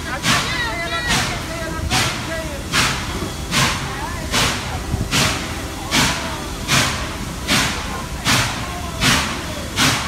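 Norfolk & Western 611, a J-class 4-8-4 steam locomotive, working at low speed: evenly spaced exhaust chuffs about every 0.8 seconds, over a steady rumble.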